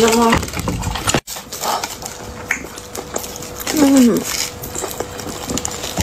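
Close mouth and eating sounds, with aluminium foil crinkling around a hot baked potato as it is handled, and a short spoken syllable about four seconds in.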